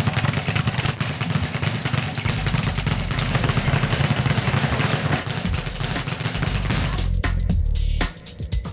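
A leather speed bag punched fast, making a rapid rattle of hits against its rebound board, over background music with a heavy, steady bass. The hits thin out about seven seconds in.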